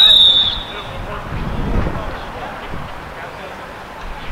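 A referee's pea whistle blown once, a single sharp blast of about half a second at the start that dips in pitch as it ends. It signals play to resume.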